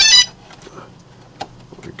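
A DJI Phantom quadcopter beeping as it is powered up: a loud, high multi-tone beep that cuts off a quarter second in. A faint click follows about a second later.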